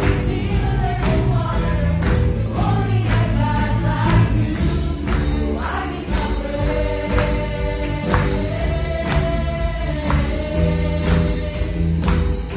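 Live church worship band playing a gospel praise song, with women singing together into microphones. Tambourines are shaken and struck in time with the beat.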